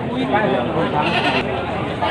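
A goat bleating, with people talking around it.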